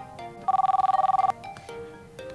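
Phone ringtone for an incoming call: a rapid electronic two-tone trill that starts about half a second in and lasts under a second, over light background music.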